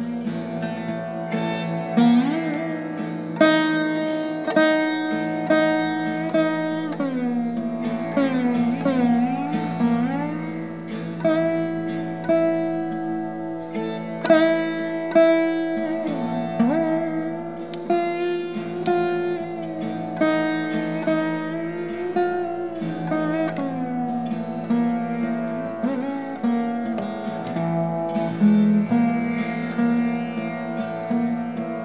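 Surbahar, the bass sitar, played solo in Raga Shree: single plucked notes about one a second, many drawn out into long bending slides in pitch, with a steady drone underneath.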